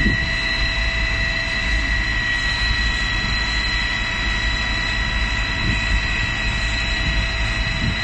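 Steady, even roar with a constant high whine over it: on-site sound at a burning building.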